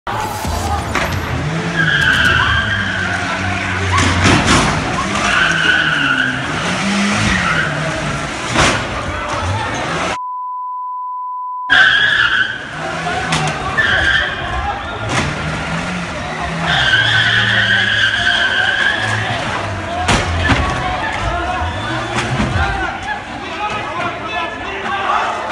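A car engine revving hard, rising and falling, with its tyres squealing in several bursts of about a second as it rams into parked cars, and sharp crashes of impact. About ten seconds in, a steady censor bleep replaces all other sound for a second and a half.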